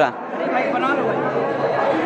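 Many people talking at once in a packed crowd: a steady background of overlapping chatter with no single clear voice.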